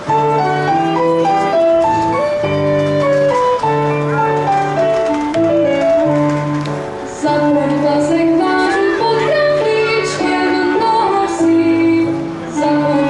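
Czech folk music played by a small band: a melody line over a steady repeating bass.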